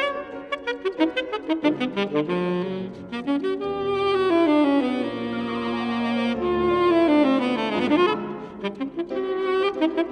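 Tenor saxophone with grand piano accompaniment playing a classical piece: quick runs of short notes, then from about four seconds in longer held saxophone notes over sustained piano chords, and quick runs again near the end.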